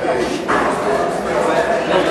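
A crowd of people talking over one another in a large room, with a louder voice cutting in about half a second in.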